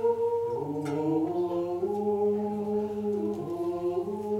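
Unaccompanied Gregorian chant: voices holding long notes that move step by step to new pitches. There is a faint click about a second in.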